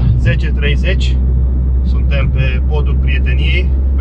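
Steady low drone inside the cabin of a Mitsubishi Lancer 1.6 petrol saloon cruising at highway speed: engine, tyre and road noise.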